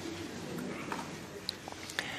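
Faint low bird cooing over quiet room tone.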